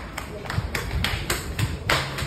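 Quick, uneven taps of footsteps on a tiled floor, the loudest near the end.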